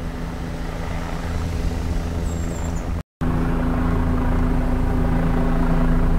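A motor vehicle's engine hum with road rumble, steady throughout, broken by a brief dropout just after three seconds in.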